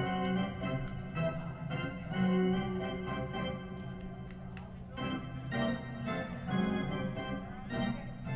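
Organ music playing held chords that change every second or so, with a fresh chord coming in about five seconds in.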